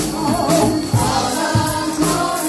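Gospel choir singing with a band, over a steady beat with tambourine-like shaking on top.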